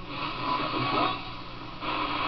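AM radio static and hiss from a 1951 Sears Silvertone as its dial is tuned between stations, over a steady low hum.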